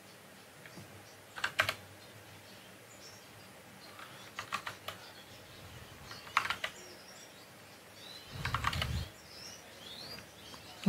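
Computer keyboard keys clicking in four short bursts of a few keystrokes each, spread across several seconds with quiet gaps between, as short values are typed and entered.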